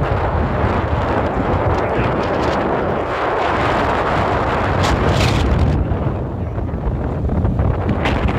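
Wind buffeting the microphone of a moving vehicle, a loud steady rush with a heavy low rumble from the road and engine beneath it. A brief hiss rises over it about five seconds in.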